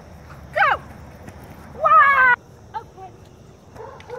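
A dog barking while running: a short bark falling steeply in pitch about half a second in, then a longer, louder bark about two seconds in.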